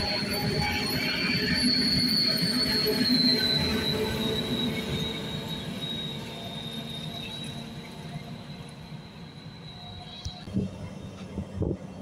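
Passenger coaches rolling past on the track with a high, steady wheel squeal that drops slightly in pitch and fades as the train draws away, cutting off about ten seconds in. A few sharp knocks follow near the end.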